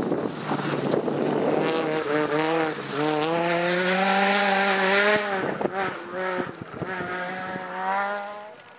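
Peugeot 208 rally car at full throttle on loose gravel. It opens with tyre and gravel noise as it slides past, then the engine revs hard as it pulls away, its pitch climbing and stepping at each gear change. The engine note breaks up briefly about five and a half seconds in before it steadies again.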